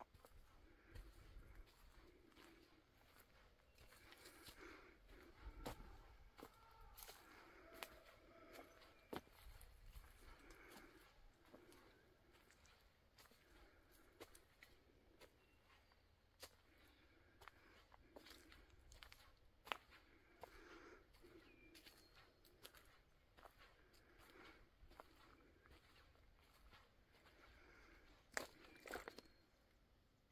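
Faint footsteps of someone walking on a forest dirt trail, with soft crunching of leaf litter and scattered light twig snaps and clicks. A few louder clicks come close together near the end.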